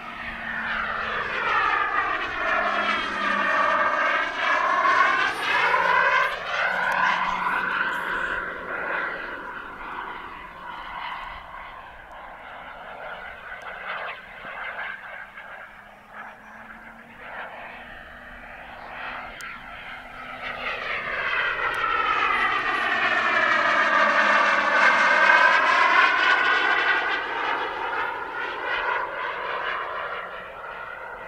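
Turbine engine of a Skymaster F-18C Hornet scale model jet in flight, making two loud passes with a sweeping, phasing sound as it goes by. It swells in the first few seconds and fades through the middle, then swells again for a second pass in the last third.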